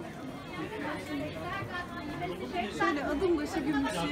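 Speech with chatter: several people talking at once.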